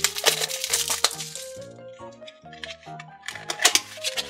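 Background music with a steady bass line, over crackling of plastic wrap being peeled off a small cardboard toy box and the box being handled, in sharp clicks during the first second or so and again near the end.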